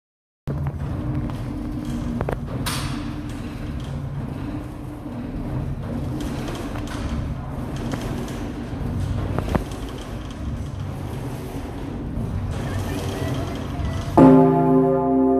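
Low steady hum and rumble in the bell chamber of the Pummerin, a roughly 20-tonne bell cast in 1951, as it is set swinging before its clapper first strikes. A few sharp clicks and knocks sound over the hum.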